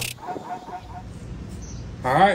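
A quick series of short, faint bird chirps in the first second, over a low outdoor background.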